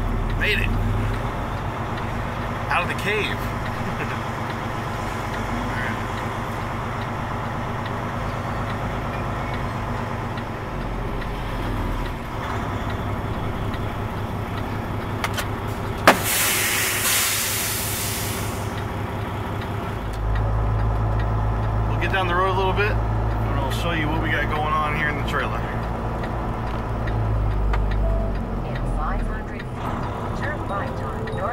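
Semi truck's diesel engine running, heard from inside the cab as the truck rolls slowly. About halfway through there is a sharp click and then a burst of air hiss lasting a couple of seconds, typical of the truck's air brakes; a few seconds later the engine rumble grows louder as it pulls away under load.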